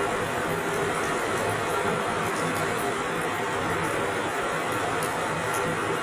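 Steady background noise with a faint low hum, even in level throughout.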